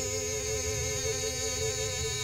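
Hymn singing: one long held note with a slight waver in pitch.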